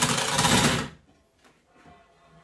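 A bathroom scale slid across a wooden tabletop: one rough scrape lasting just under a second.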